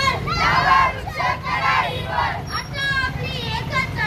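A group of children shouting a slogan together in short, loud phrases with brief pauses between them.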